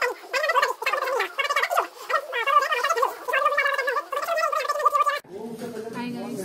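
A man's speech played fast-forward, turned into high-pitched, garbled chipmunk-like chatter with no words to be made out; it cuts off abruptly about five seconds in.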